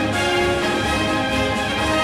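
Instrumental orchestral music with brass, playing steadily without singing.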